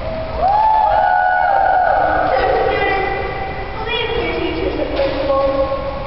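Young voices calling out in long, drawn-out shouts, with a gliding rise and fall about half a second in.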